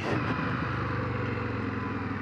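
Indian FTR 1200 S V-twin engine on a closed throttle, engine braking as the motorcycle slows, a low steady hum under an even rushing noise.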